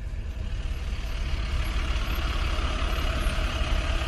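A vehicle engine running steadily with a deep rumble and a hissy noise over it, slowly growing louder.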